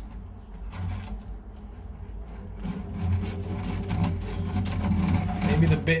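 Electric drum drain snake's motor running with a steady hum that grows louder about halfway through, as its hair-clogged cable is worked out of a shower drain, with rubbing of the cable against gloves and the drain.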